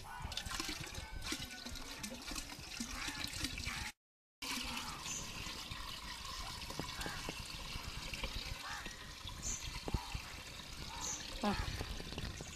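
Dark basil and bael leaf extract poured from a steel bucket into a blue plastic drum: a steady splashing stream of liquid falling onto liquid. The sound drops out briefly about four seconds in, then the pouring carries on.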